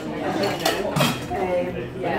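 Stainless-steel cocktail shaker tins clanking as a bartender handles them, with two sharp metallic knocks about two-thirds of a second and a second in.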